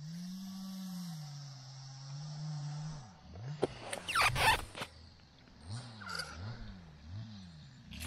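Small winter ice-fishing reel's drag slipping as a fish pulls line: a low humming whine, held steady for about three seconds, then swooping up and down in repeated pulses.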